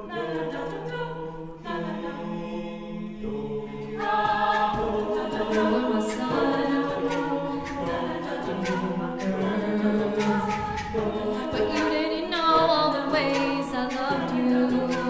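A mixed-voice a cappella group singing sustained wordless chords. About four seconds in, a steady vocal-percussion beat joins them and the sound grows fuller and louder.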